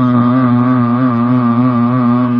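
A long held low note of Gurbani devotional chanting, steady with a slight waver in pitch.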